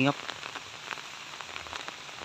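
Rain falling steadily: a soft, even hiss with a few faint drop ticks.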